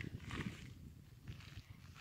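A few faint, soft scuffs of footsteps on lakeshore gravel over a quiet outdoor background.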